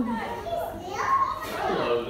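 Children's voices chattering and calling out over one another, in high-pitched bursts.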